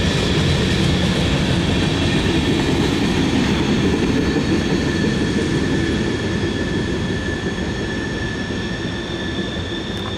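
Rumble of a freight train's cars rolling away just after clearing a grade crossing, fading from about six seconds in, with steady high ringing tones over it.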